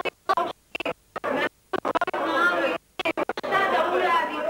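People talking, in short stretches broken by sudden drops to near silence.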